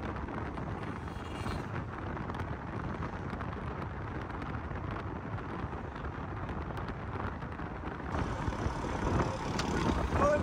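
Steady road and wind noise of a moving vehicle, a rumble with no clear engine note, growing a little louder near the end.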